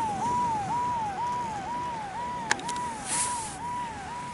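An electronic warbling alarm tone, a falling sweep that repeats about twice a second without a break. A sharp click comes about two and a half seconds in, followed by a brief hiss.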